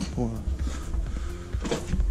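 A man's voice saying a single word, over a steady low rumble, with a short crackling noise about three quarters of the way through.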